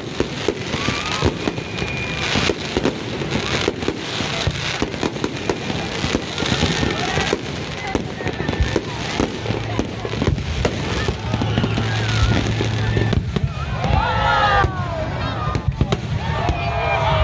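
Aerial fireworks display: a continuous barrage of shell bursts, a dense run of bangs and pops with no let-up.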